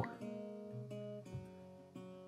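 Soft acoustic guitar background music, a few sustained notes changing pitch.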